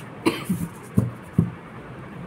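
A woman coughing lightly, four short coughs in about a second and a half, the last two the sharpest.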